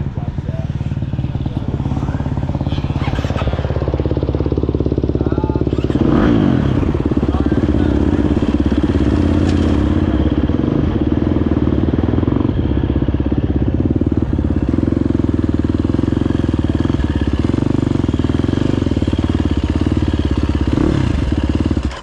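GasGas EC350F's single-cylinder four-stroke engine running at a steady idle as the bike rolls along at walking pace, a little louder from about six seconds in. It cuts out suddenly right at the end: the bike stalls.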